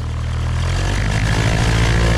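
Single-engine Cessna's piston engine and propeller throttling up for takeoff: a steady drone that grows louder and shifts up in pitch from under a second in.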